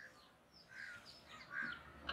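Faint bird calls: a few short calls, one about a second in and another near the end, mixed with thin, higher chirps that fall in pitch.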